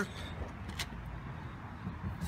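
Low, steady background rumble in a lull, with one faint click just under a second in.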